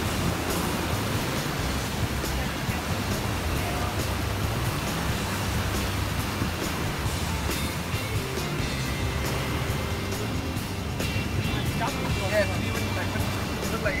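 Surf washing against rocks as a steady noisy rush, with music underneath. A voice comes in near the end.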